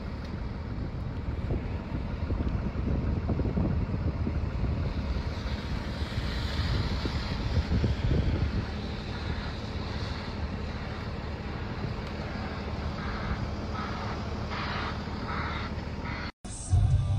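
Caterpillar 980K wheel loaders driving past, their diesel engines giving a steady deep rumble under wind noise on the microphone. It is loudest about halfway through, as one loader passes close.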